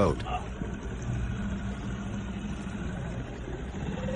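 Small outboard motor running steadily with a low hum, with water churning behind it as it pushes a small boat along.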